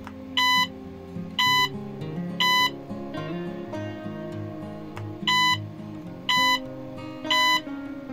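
The Arduino Cyclone LED game's buzzer beeps three times, short and evenly spaced about a second apart, then pauses and beeps three more times. Acoustic guitar music plays underneath.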